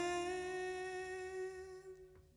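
Background song: a voice holding one long note that fades away near the end.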